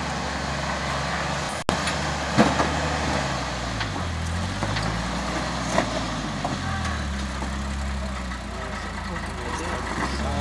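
Rock-crawling Jeep's engine under throttle as it climbs over boulders, the engine note rising and falling a couple of times as the driver works the gas, with a few sharp knocks.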